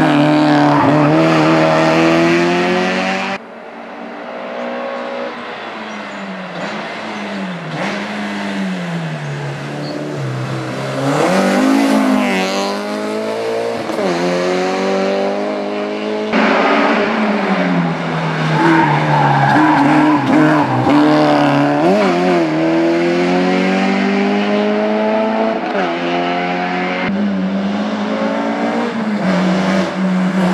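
Honda Civic EG hatchback race car's engine revving hard as the car drives past, its pitch repeatedly climbing and then dropping at gear changes and as it goes by. The sound jumps abruptly a few times where separate shots of the car are joined.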